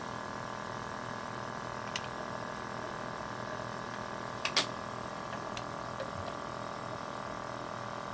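Steady hum of several even tones from a powered-up Hyrel Engine HR 3D printer's fans and electronics, with a few light clicks and taps of parts being handled, the sharpest a double click about four and a half seconds in.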